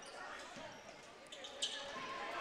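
Basketball being dribbled on a gym's hardwood floor under a steady murmur of crowd voices in a large, echoing hall, with a couple of sharp short sounds from the court near the end.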